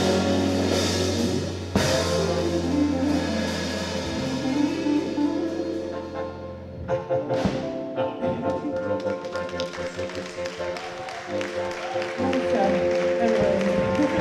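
Live funk-pop band playing: drum kit, electric guitar, keyboard and voices. A sustained deep bass layer drops out about seven seconds in, leaving a lighter groove with crisp drum hits.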